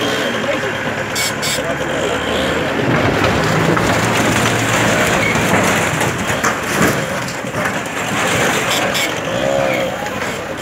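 Diesel engine of a backhoe loader working under load as its bucket pushes over a wooden structure, with a couple of sharp knocks of breaking debris. Voices are heard in the background.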